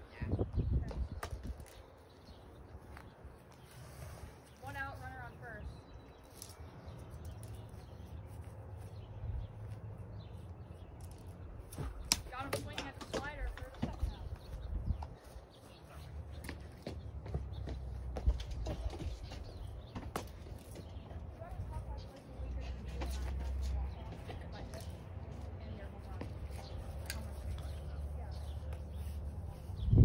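Outdoor ambience: a steady low rumble of wind on the microphone, with faint children's voices calling out twice in the distance.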